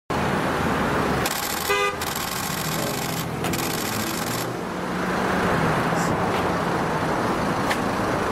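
Steady street traffic noise with a short single car horn toot about two seconds in.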